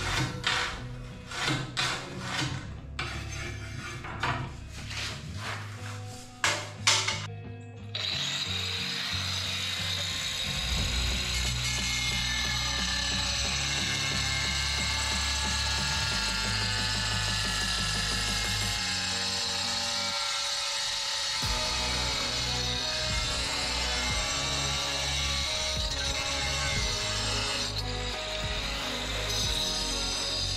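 Handheld angle grinder cutting a ceramic floor tile: it starts suddenly about eight seconds in and runs with a steady high whine to the end. Before it, a series of short separate scrapes and knocks as the tile is marked along a level.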